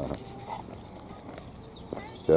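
Faint birdsong over a low outdoor background, with a brief louder sound right at the start.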